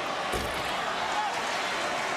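Basketball arena crowd noise, a steady din of many voices, with a single thud about a third of a second in.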